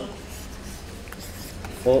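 Faint scratching and tapping of a stylus writing on a tablet, over a steady low hum; a man's voice starts near the end.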